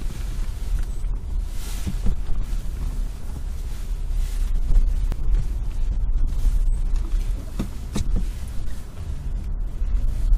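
Low, steady cabin rumble inside a 2011 Chevrolet Volt as it pulls away and drives slowly on battery power, with a couple of light clicks.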